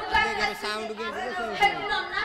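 Speech: voices talking over one another, with no other sound standing out.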